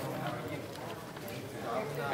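Indistinct chatter of several people talking at once in a room, no single voice standing out.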